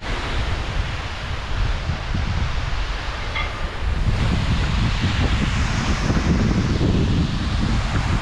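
Wind buffeting the microphone in loud, uneven gusts over a steady rush of water spilling over a small weir.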